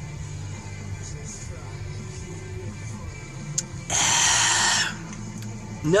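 A man drinks from a bottle of iced coffee, then lets out a loud breathy exhale about four seconds in, lasting about a second, over quiet background music.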